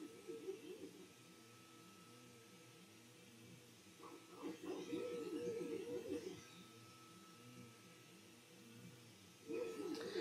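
FLSUN T1 Pro delta 3D printer running a print job: its stepper motors whine in short, repeated rising-and-falling pitch sweeps as the print head moves, over a thin steady high tone. The sound is faint, and louder for a couple of seconds midway.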